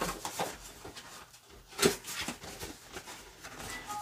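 Hands handling and opening a cardboard watch box: faint scrapes and rustles of the card, with one sharper tap a little under two seconds in.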